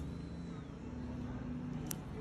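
Steady low rumble and hum of background machinery or traffic, with one sharp click near the end.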